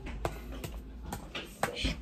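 Handling noise from a hand-held phone: a few irregular taps and clicks over a low rumble, followed by the start of a word near the end.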